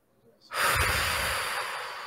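A person's long, heavy breath close to the microphone, starting suddenly about half a second in and fading over about two seconds.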